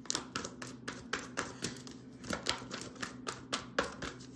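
A deck of tarot cards being shuffled by hand: an irregular run of short, crisp card clicks, a few each second.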